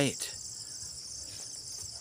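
A steady, high-pitched chorus of insects.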